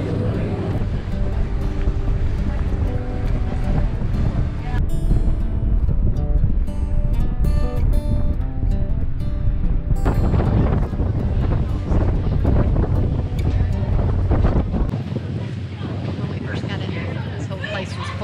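Wind buffeting the microphone on the open deck of a moving ferry, a heavy steady rumble, with background music playing over it; the melody is clearest in the middle stretch.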